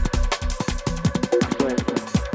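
Electronic dance music played through a DJ mixer: a fast, dense beat with deep bass notes that slide downward in pitch again and again.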